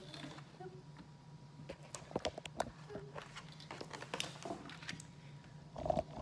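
Sheets of watercolor paper being lifted, flipped and slid across a tabletop: scattered light rustles and small taps over a steady low hum.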